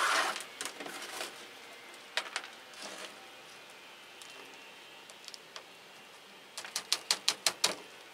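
Potting handling sounds: coconut husk chips and a thin plastic orchid pot scraping and clicking as the plant is pressed into the pot. There are a few scattered clicks, then a quick run of about seven sharp clicks near the end.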